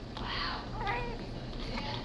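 Newborn baby giving two short, thin mewing cries, about half a second and a second in.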